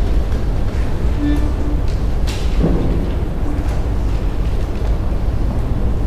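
Button accordion in a quiet, sparse passage over a low rumble: two short soft notes a little past one second and a sharp click just after two seconds.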